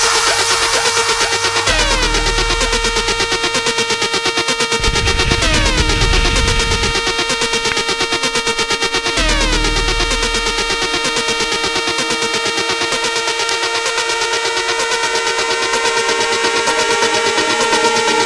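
Electronic background music: sustained synthesizer chords over a fast pulsing beat, with the pitch swooping downward three times and deep bass coming and going in the first half.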